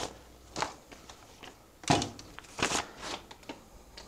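A few short, scattered rustling and handling noises, four or so brief scuffs and rustles at a counter.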